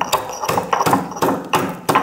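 Stone pestle pounding a green chilli and ginger in a stone mortar, a quick run of sharp strikes a few times a second as the ingredients are crushed.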